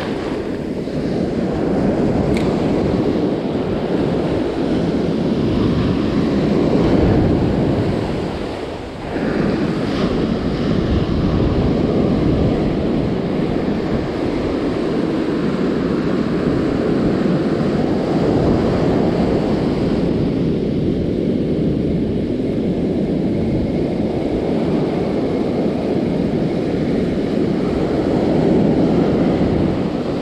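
Ocean surf breaking and washing up a sandy beach, with wind buffeting the microphone in a steady, loud rush.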